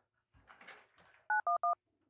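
Desk telephone keypad dialing three quick touch-tone beeps, 9-1-1, to call for help after a robbery. A soft rustle of handling comes before the beeps.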